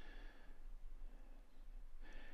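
Faint wood lathe spinning a sapele bowl blank while a gouge makes light finishing cuts, mixed well down. It comes through as a soft, even hiss with a faint thin tone near the start.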